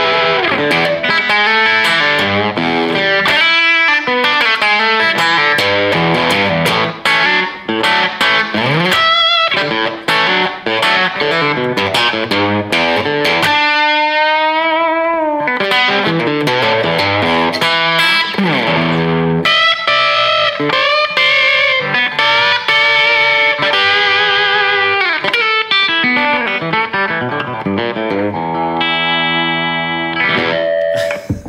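Jasper Guitars Deja Vudoo electric guitar played through an amplifier on its bridge pickup, with the tone knob turned back slightly to tame the treble. It plays a continuous lead passage of fast note runs and string bends, with one long falling glide about halfway through and rapid repeated picking of a note near the end.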